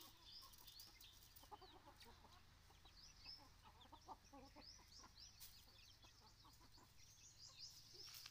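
Faint chickens: soft hen clucks with a steady scatter of short, high peeps from chicks.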